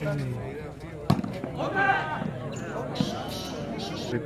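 A volleyball being struck by hand during a rally: sharp smacks about a second in and again near three seconds, with players and spectators shouting in between.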